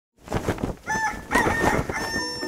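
Animal calls in a channel intro sting: a quick run of short, sharp calls, then a higher, held call near the end.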